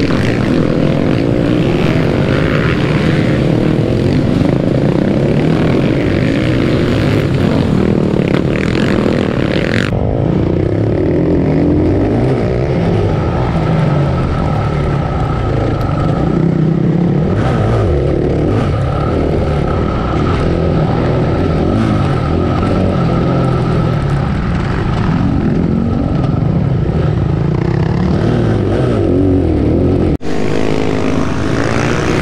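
Supermoto race bike engines. For about the first ten seconds, bikes race past the trackside. Then, after a sudden change in the sound, comes an onboard recording of one supermoto's engine revving up and down as it is ridden hard.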